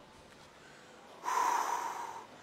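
A man's noisy breath through the mouth, about a second long, starting just over a second in: a drag on or puff of a cigarette.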